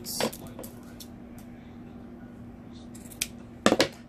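Sewing shears snipping through a stack of folded satin ribbon: a sharp cut right at the start, a couple of fainter clicks, then a loud double snip near the end.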